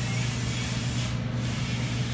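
Steady background hiss with a low, constant hum underneath, with no other event standing out.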